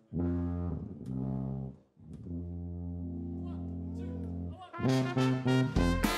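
A brass band with sousaphone plays long held low brass notes, one long sustained chord in the middle. Near the end the full band comes in with short, punchy hits.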